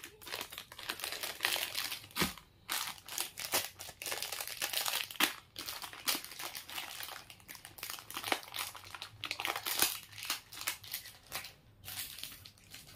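Plastic packaging being crinkled and handled, an irregular run of rustles and crackles.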